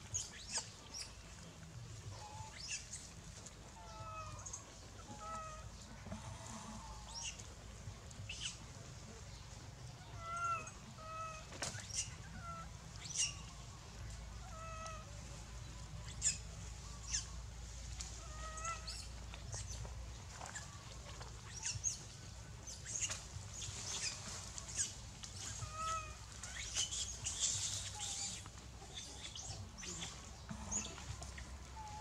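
Short chirping animal calls repeating every second or two, some in quick pairs, with scattered sharp clicks and rustles.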